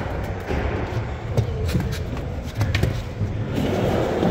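Skateboard wheels rolling over the wooden pump track: a low, steady rumble broken by scattered knocks and clacks.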